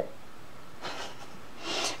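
A woman breathing in the pause between speech: a faint breath about a second in, then an audible intake of breath just before she speaks again.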